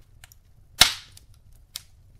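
Wood logs burning in a fireplace, crackling: one loud, sharp pop a little under a second in and a smaller pop near the end, over faint scattered small crackles.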